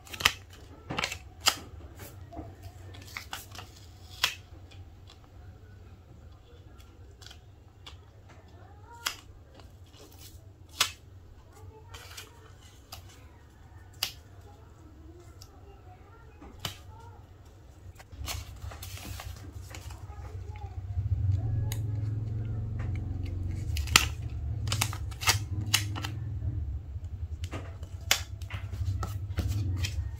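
Hands handling sticker sheets: sharp crackles and clicks of paper backing being peeled and bent, and fingertips pressing stickers onto a MacBook Air's aluminium lid. A longer peeling rustle comes about eighteen seconds in, and a low steady hum grows louder after it.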